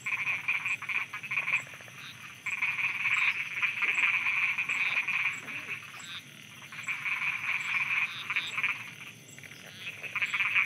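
A chorus of frogs croaking, a dense, rapid pulsed calling that comes in bouts, easing off briefly about two seconds in and again near the end. A faint, evenly repeating high tick sits above it.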